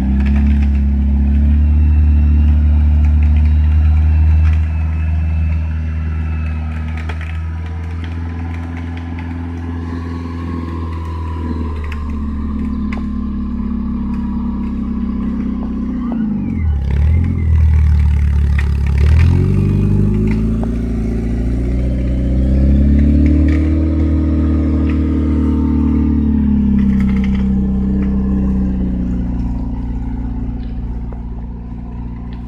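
Jeep Wrangler YJ's 2.5-litre four-cylinder engine running under load as it crawls through deep mud. The revs hold steady, dip sharply twice about halfway through, then climb and swell again.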